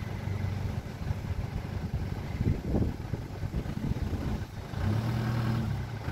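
Iveco van's engine running under load as the stuck van tries to pull out of soft sand, its hum growing louder and steadier from about five seconds in.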